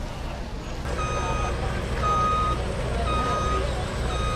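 A vehicle's reversing alarm beeping at a steady rate, about one half-second beep each second, starting about a second in. It sounds over a low rumble and outdoor crowd noise.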